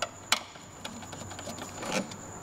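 Hand screwdriver tightening screws into a scooter's plastic trim panel: a few sharp clicks of tool and screw, the sharpest about a third of a second in, and a short scraping swell near the end.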